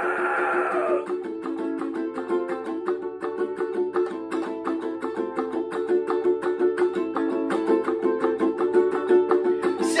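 Ukulele strummed fast and hard in a steady rhythm, an instrumental stretch of a heavy-styled song.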